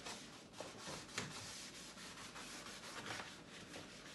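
A sponge rubbing and scrubbing against the plastic inner panel of a fridge door, in faint, irregular strokes.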